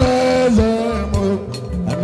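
Live band music at full volume: a held, gliding melody line over a steady low drum beat.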